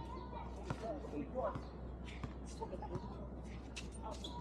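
Basketball bouncing on a hard court: a handful of sharp thuds at uneven intervals, with distant voices of players.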